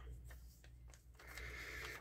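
Quiet room tone with a steady low hum, and a faint rustle of a glossy magazine page being smoothed and shifted by hand, a little louder in the second half.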